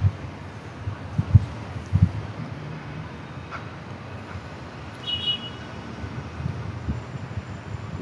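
Wind rumbling on a phone's microphone outdoors, with a few irregular low gusts. A brief high tone comes about five seconds in.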